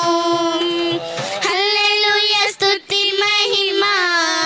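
Two young girls singing a devotional song together into microphones, holding long sustained notes. They draw a breath about a second in and pause briefly near the end of the phrase.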